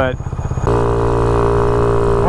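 A motor scooter's small engine idling with a lumpy, pulsing beat, then, about two-thirds of a second in, a sudden switch to a louder, steady engine drone at cruising speed.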